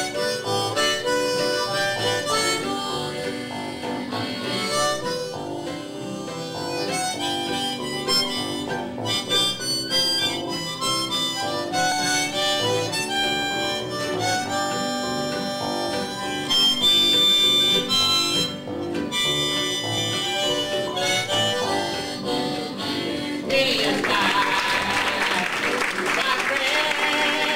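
Harmonica solo over a live acoustic string band, with acoustic guitars, mandolin and electric bass keeping the rhythm in a country-blues tune. Near the end a noisy wash comes in over the band.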